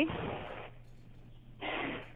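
Telephone line noise: a short burst of hiss at the start and another near the end, heard through a phone's narrow band, over a faint steady hum.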